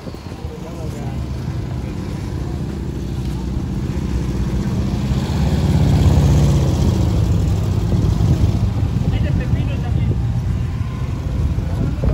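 Street traffic: a motor vehicle's engine running and passing, loudest about halfway through, with voices in the background.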